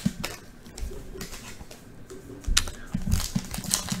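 Trading cards and foil card packs being handled on a tabletop: a run of small clicks and taps as the cards are stacked and set down. Near the end it gets louder and busier as the next foil pack is picked up and its wrapper is torn open.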